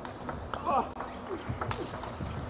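Celluloid-type plastic table tennis ball clicking off rubber-faced rackets and the table in a fast doubles rally: a few sharp, irregularly spaced clicks. Short high squeals come in between.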